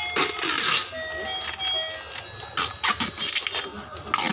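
Battery-operated toy fishing game playing its tinny electronic melody in single held notes, mixed with quick plastic clicking and rattling as its board turns.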